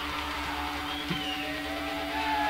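Live hardcore punk band in a quiet, sparse passage: an electric guitar holds one steady note while higher guitar feedback tones slide up and down above it, over a low rumble.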